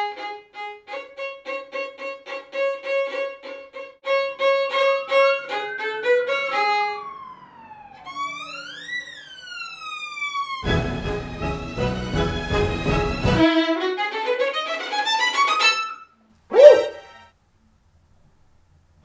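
Violin played in up-bow staccato: strings of short, separate bowed notes at about four a second, at a tempo of about 65, a bit slow for this technique. The passage ends in a quick rising run of staccato notes. A couple of sliding pitch glides come in the middle, and a brief loud sound comes near the end.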